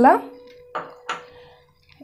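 Metal spoon clinking twice against a ceramic bowl, about a second in, as it starts stirring cubed paneer into a masala mix.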